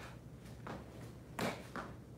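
A few short scuffs and thumps from a person moving through a kung fu saber form on foam floor mats, the loudest about one and a half seconds in, over a low steady hum.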